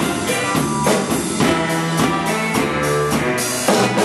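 Drum kit played in a steady rock groove, with regular stick strikes on drums and cymbals, over a backing track with guitar and bass.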